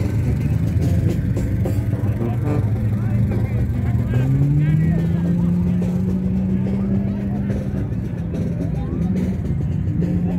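A motor vehicle engine running steadily, rising in pitch about four seconds in as it speeds up, then holding, with voices in the background.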